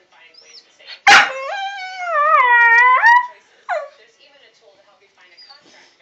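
A puppy gives a sharp bark-like onset about a second in that runs into a long howl, dipping in pitch and rising again at the end. A short falling yelp follows about half a second later.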